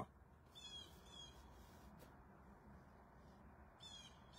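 Near silence, with a few faint high chirps of birds outside the car, about half a second to a second and a half in and again near the end.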